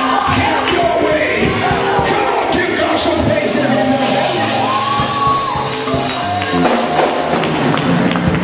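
Live church worship music: held low notes with voices singing and shouting over them in a lively congregational din.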